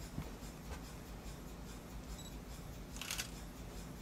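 Low steady room hum with faint small clicks, and a brief scratchy rasp about three seconds in.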